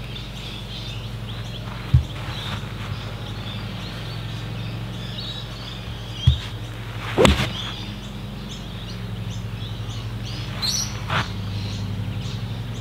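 Golf iron striking a ball off a practice mat: one sharp, crisp hit about seven seconds in, with a couple of lighter knocks before it and birds chirping throughout.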